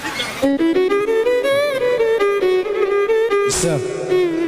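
Music starts about half a second in: a single violin-like melody line that moves in steps and wavers with vibrato. There is a short loud burst of noise near the end.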